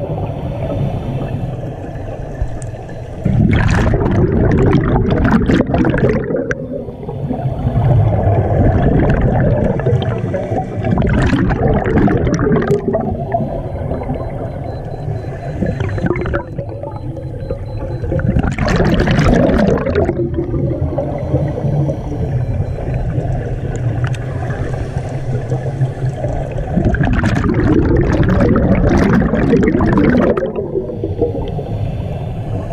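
Scuba regulator breathing heard underwater: a loud rush of exhaled bubbles about every seven seconds, four times, with a low rumble of water and regulator noise in between.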